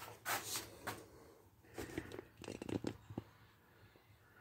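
Faint handling noise: scattered rustles and light clicks, most of them in the second half.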